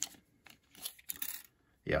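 Soft handling noises as a tape measure is pulled out and laid along a small pocketknife: a few faint, short scraping and rustling sounds.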